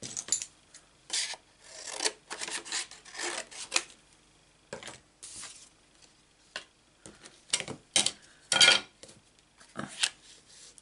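Cardstock being handled and trimmed down, a series of short rubbing and scraping cuts and rustles, with the loudest scrape near the end.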